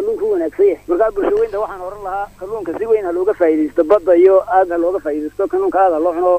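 Speech only: one person talking continuously in Somali on a radio broadcast.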